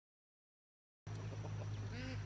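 Complete silence for about the first half, where the sound track drops out at an edit, then faint outdoor background noise with a steady low hum.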